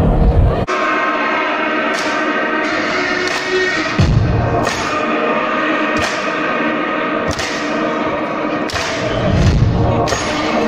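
Intro music at a live rock concert: sustained chords punctuated by heavy drum hits about once a second, with deep booming hits about four seconds in and again near the end.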